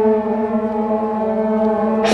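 A long, steady horn note held at one pitch, part of the procession's music.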